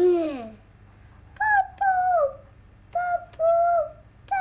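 A short hummed 'mm', then a high child's voice hooting three two-note 'coo-coo' calls, each pair stepping down in pitch.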